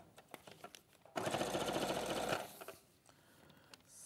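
A domestic sewing machine stitching through layered, padded fabric in one short run of about a second, starting about a second in and then stopping.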